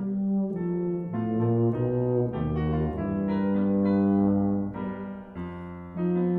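Brass ensemble and piano playing held chords that change every second or so, dipping quieter shortly before the end.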